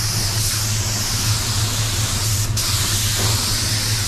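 Paint spray gun hissing steadily as it sprays base coat at about 15 psi, over a steady low hum from the paint booth's air system. The hiss breaks briefly about two and a half seconds in.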